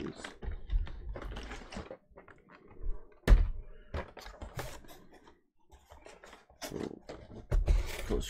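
Shrink-wrapped cardboard Pokémon card collection boxes being handled, stacked and set down on a table: scattered knocks, scrapes and rustles, with a loud thump a little over three seconds in and another heavy bump near the end.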